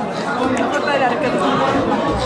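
Indistinct chatter of several voices in a busy restaurant dining room.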